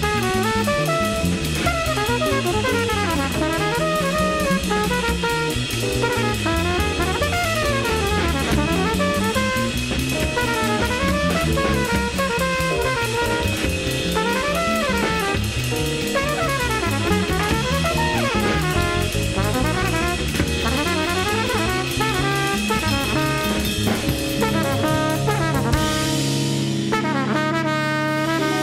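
Small jazz group playing: walking bass and drum kit under trumpet and Rhodes electric piano. About two seconds before the end the drums drop away and the band settles onto long held notes.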